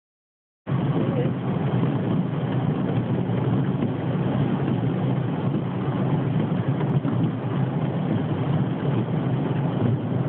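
Steady in-cabin road noise of a car driving on a rain-soaked highway: tyres on the wet road and rain on the car, starting under a second in.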